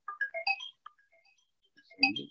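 Electronic ringtone-style melody: a quick rising run of short bright notes that thins out, then starts again near the end.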